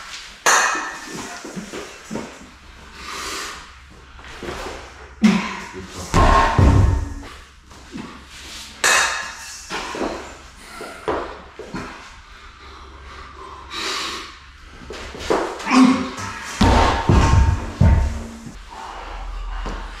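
A strongman straining through reps with a 100 kg giant dumbbell, with grunts and forced breaths. The dumbbell comes down onto the floor with heavy thuds, twice.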